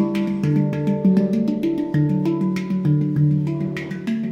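Handpan played with the hands: a quick, rhythmic run of struck steel notes, several a second, each ringing on and overlapping the next.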